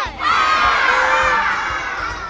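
A group of children cheering and shouting together in one long burst that slowly fades.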